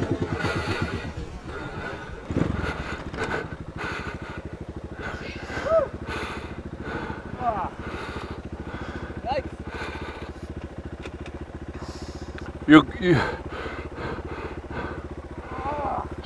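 Dirt bike engine idling steadily. Over it come a few short voice-like calls, the loudest about thirteen seconds in.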